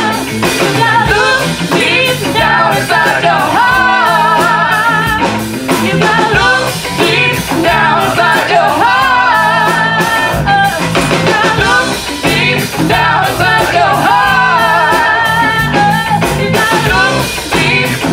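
Live rock band playing a song: singing over electric guitar, bass and drum kit, with a steady beat.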